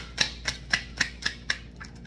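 A deck of oracle cards being hand-shuffled, the cards slapping against each other in a quick regular rhythm of about four clicks a second that thins out near the end.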